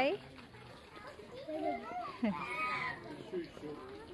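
Small children's voices, soft and babbling, with a brief higher call about two and a half seconds in.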